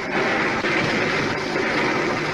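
Rain pouring down: a loud, steady hiss of heavy rainfall.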